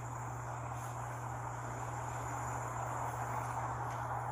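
Steady outdoor background noise with a constant low hum and a thin, steady high tone running through it.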